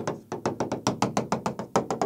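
Stylus tapping on a touchscreen whiteboard as a dashed line is drawn: a quick, even run of taps, roughly eight to ten a second.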